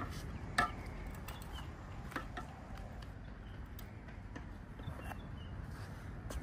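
Low, steady outdoor rumble with a few scattered light taps and clicks from a GNSS survey pole and handheld controller being handled. The sharpest tap comes about half a second in.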